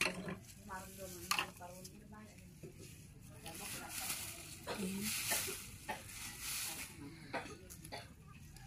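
Black plastic garbage bag rustling and crinkling as it is handled and set down in a plastic basket on a scale, the crinkle swelling and fading, with a few sharp knocks.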